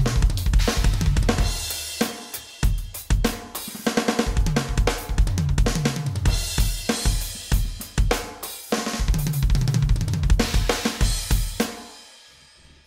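Drumtec Diabolo electronic drum kit played in fast linear-style fills: rapid strokes around the drums with kick drum hits and cymbal crashes. It comes in three phrases with brief gaps between them, and the last rings away near the end.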